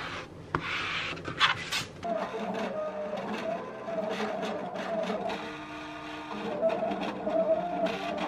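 A sliding paper trimmer scraping through a printed sticker sheet. From about two seconds in, a Silhouette Portrait 2 cutting machine runs, its motors whining at a few shifting pitches as it drives the blade carriage and feeds the sheet while cutting sticker outlines.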